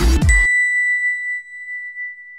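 Electronic outro music ending abruptly about half a second in, overlapped by a single bright ding that rings on and slowly fades: the chime of an animated logo sting.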